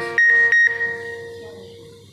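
An electronic beeping tone, pulsing loud twice in the first moment and then fading out over about a second.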